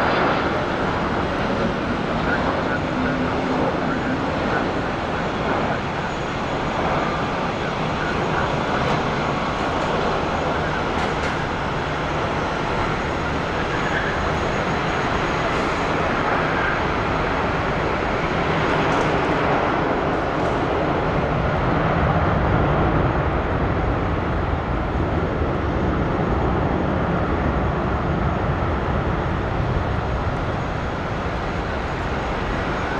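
Jet engines of a Boeing 747-400 landing: a steady rushing engine noise as it comes in over the threshold and rolls out along the runway, swelling about twenty seconds in.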